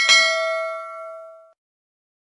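Notification-bell sound effect: a single bright ding with several ringing tones, fading out over about a second and a half.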